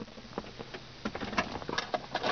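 Faint rustling with scattered light clicks and taps: camera-handling and body-movement noise as the camera is swung around inside a pickup's cab.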